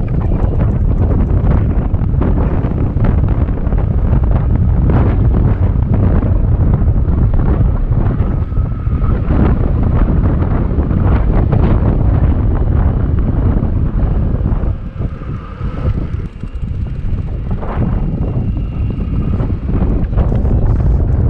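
Wind buffeting the microphone of a handlebar-mounted camera on a moving e-bike: a steady low rumble that eases briefly about fifteen seconds in.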